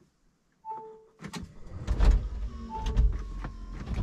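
Lifted Smart car's starter motor cranking without the engine catching: the car won't start. A short electronic dashboard beep sounds about half a second in, and another comes during the cranking.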